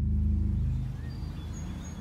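Dark ambient background sound bed: a low steady drone, loudest at the start and easing off, with a few faint high chirps.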